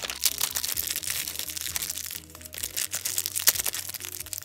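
Thin clear plastic bag crinkling and crackling in quick irregular clicks as it is handled and pulled open, over soft background music.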